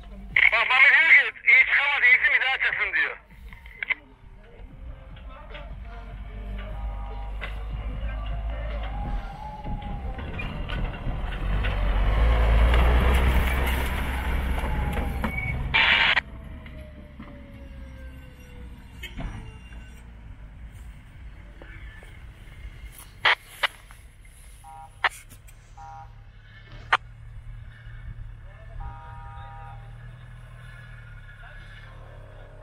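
Loud voices near the start, then a Mitsubishi L200 pickup's engine and tyres on a dirt slope, growing louder as it approaches, loudest about halfway through, then fading as it passes and drives away down the hill.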